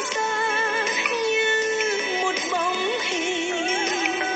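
Background song: a solo voice singing a slow melody with vibrato over instrumental accompaniment.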